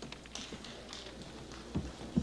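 A few faint taps and clicks over a low steady hum of room and sound-system noise.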